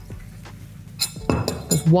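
Glass beaker clinking and knocking against the bench and other glassware as it is handled and set down, the knocks starting about a second in.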